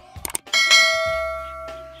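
Two quick clicks, then a single bright bell chime that rings out and fades over about a second and a half: the notification-bell sound effect of a subscribe-button animation.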